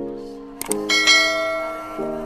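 Background music with held chords, over which a mouse-click sound effect and a bright bell ding play just under a second in, the ding ringing away slowly.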